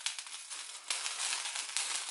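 Raw Italian sausage sizzling and crackling as it is squeezed into a hot skillet to brown, the hiss stepping up about a second in.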